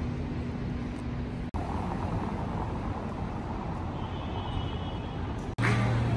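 Steady city street noise with passing car traffic. It is broken twice by a sudden brief gap where the recording is cut.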